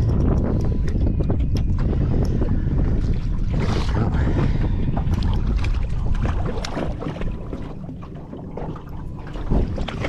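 Wind buffeting the microphone, with water splashing as a hooked kingfish thrashes at the surface beside the landing net; one louder splash about four seconds in.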